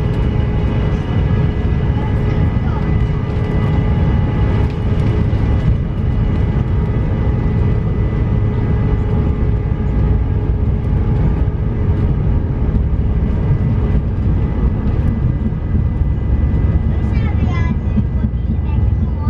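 Jet airliner engines at takeoff power during the takeoff roll, heard from inside the cabin: a loud, steady rumble with a steady whine above it.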